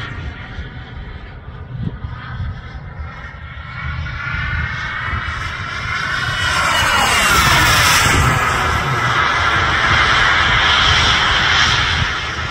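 Radio-controlled model F-15 Eagle jet flying past, its whine dropping in pitch as it goes by about six to seven seconds in, and louder through the second half.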